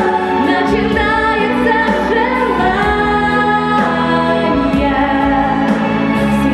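A girl singing a Russian song into a handheld microphone, her voice carrying a melody over sustained instrumental accompaniment.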